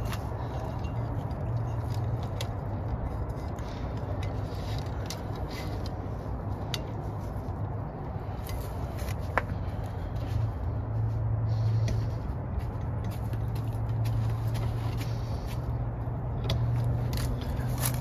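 Light scrapes and small clicks of hands handling electrical wire and tape at a metal outlet box, with one sharper click about halfway, over a steady low background hum.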